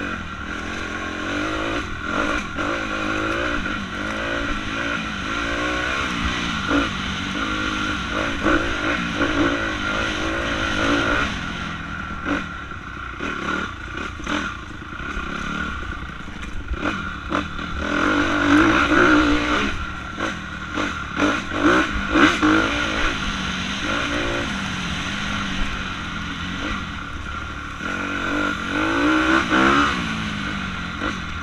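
A 2016 Honda CRF250R's single-cylinder four-stroke engine revving up and down with the throttle as the dirt bike is ridden hard over rough ground. Clatter and knocks come from the bike over bumps, thickest in the middle stretch.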